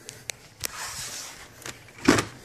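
Handling noise at a workbench: a few light clicks in the first second, a brief rustle around the middle and another click near the end.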